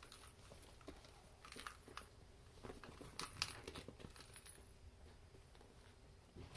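Faint rustling and crinkling of a crumpled sheet as kittens scramble and play on it, in scattered short bursts, the loudest about three and a half seconds in.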